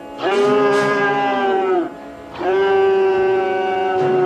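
A man's voice crying out in two long, drawn-out wails: the first trails downward and breaks off about halfway through, and the second begins moments later and is held steady.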